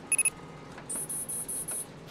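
Three quick electronic beeps, then about a second of fast, high-pitched pulsed beeping, about five pulses a second, over a faint steady hiss.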